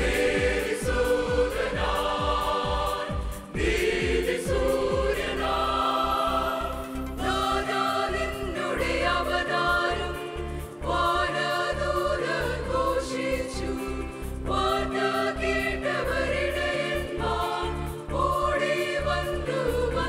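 Mixed church choir singing a Malayalam Christian song in harmony, with a low rhythmic pulse beneath the voices.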